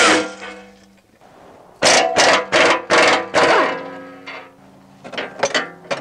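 Impact wrench firing in short bursts on a 16 mm skid plate bolt: one burst at the start, then about five quick bursts in a row about two seconds in, each leaving a ringing tail.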